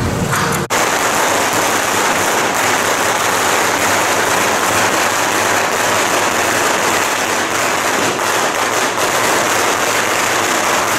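Continuous dense crackling of a long string of firecrackers, a loud even rattle with no break. It starts abruptly about a second in, replacing procession music.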